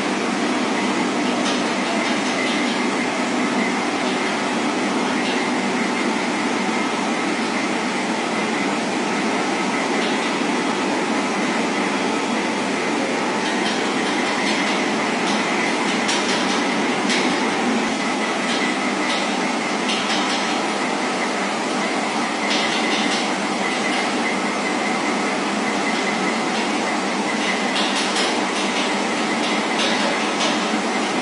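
Steady train noise at an unchanging level, with faint clicks now and then.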